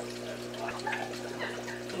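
Light splashing and dripping of aquarium water as a rock decoration is set into the tank by hand, over a steady low hum.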